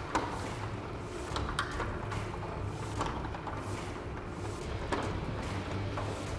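Full-view aluminium-and-glass sectional garage door rolling up on its tracks, a steady mechanical running sound with a few faint clicks.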